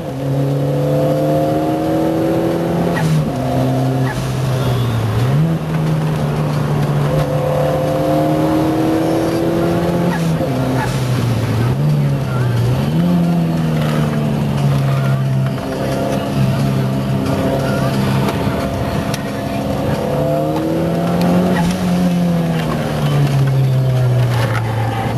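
A Cosworth-engined car's engine driven hard on a circuit. Its pitch climbs steadily through each gear and drops sharply at every gear change, several times over.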